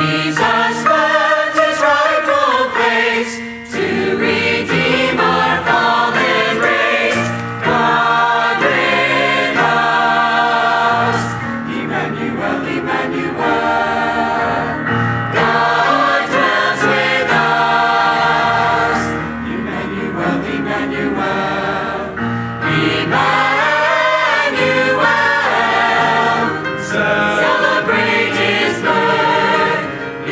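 Church choir of men and women singing together.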